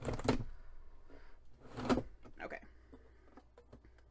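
We R Memory Keepers Cinch binding machine's handle pulled down to punch a row of holes through a chipboard book cover, with a noisy clunk at the start and a second about two seconds in as the handle is worked.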